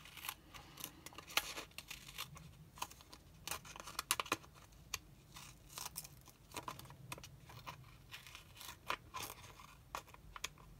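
Small scissors snipping through acetate window sheet and double-sided tape, trimming close along a paper frame's edge: a run of short, sharp, irregular snips.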